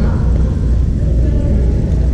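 Steady low rumble of a large sports hall's background noise, with faint voices in it.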